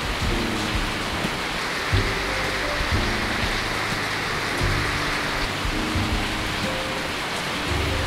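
Steady rain falling, an even hiss throughout, with soft background music underneath.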